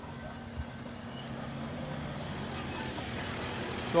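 Steady low hum of an engine running nearby, under a general outdoor noise, slowly growing a little louder.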